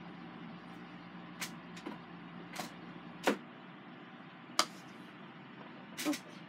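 A handful of short, sharp clicks and knocks, spaced about a second apart, the loudest a little past three seconds in: small makeup items being handled and set down on a vanity table.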